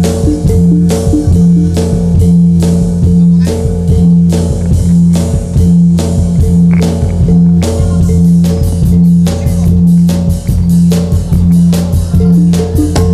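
Loud music accompanying a Javanese jathilan dance. Repeating low bass notes run under sharp percussion strokes that come about twice a second, then come faster from about eight seconds in.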